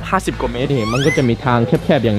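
A man talking in Thai, with a short high-pitched squeak rising in pitch about a second in.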